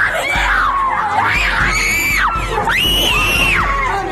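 Women screaming and shouting in a fight, several long high-pitched screams rising and falling one after another, the longest held for about a second near the end.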